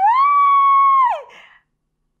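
A woman's high-pitched excited scream: one long held whoop that rises at the start and drops away a little over a second in.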